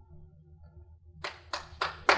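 Faint room hum, then the first scattered hand claps of audience applause a little over a second in, coming quicker toward the end.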